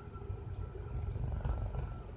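Low, steady rumble of a car, heard from inside the cabin.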